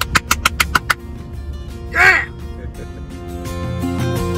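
Rapid hand clapping, about eight quick claps in the first second, then a short high whooping cry about two seconds in, over background music that swells near the end.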